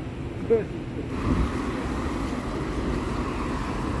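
Steady city street traffic noise, with a brief voice fragment about half a second in.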